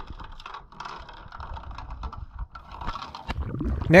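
Camera-housing audio from an action camera on an anchor rode being towed through the water: a muffled rumble with irregular crackling clicks as water and the rode move against the housing.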